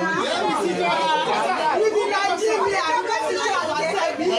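Several people talking at once: a loud, steady din of overlapping conversation and chatter.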